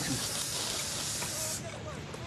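Gas torch hissing steadily, then cutting off suddenly about a second and a half in.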